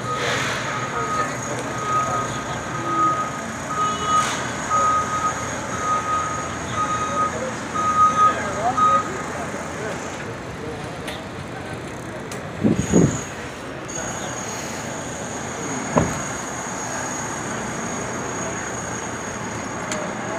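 A vehicle's reversing alarm beeping at one pitch, about one and a half beeps a second, over steady city street noise and background voices. The beeping stops about nine seconds in. A brief louder sound comes about thirteen seconds in.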